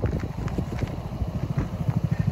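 Hammerhead GTS 150 go-kart's 149cc air-cooled single-cylinder four-stroke engine idling with a rapid, even low putter.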